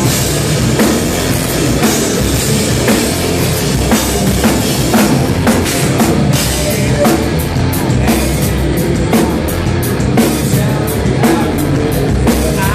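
Hard rock band playing live and loud: distorted electric guitars over a drum kit with steady, frequent drum and cymbal hits.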